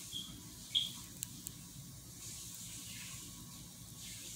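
Someone smoking a blunt. There are a few short lip smacks and clicks as she puffs on it in the first second and a half, the loudest about three quarters of a second in. Then comes a soft hiss of breath as the smoke is drawn in and let out.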